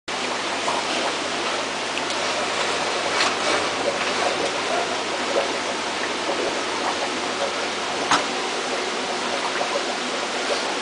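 Steady rush of churning, aerated water in a fish treatment tank, with two brief knocks, one about three seconds in and one near the end.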